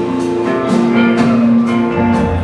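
A live rock band plays an instrumental passage between sung lines: guitars and keyboards hold sustained notes over a steady drum beat, heard from the audience in a large hall.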